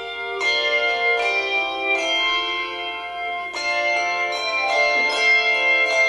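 Handbell choir playing a piece: chords of handbells struck together and ringing on, overlapping, with a new chord about every second.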